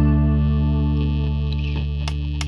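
Rock song break: an electric guitar chord and bass held and slowly fading, with the drums stopped.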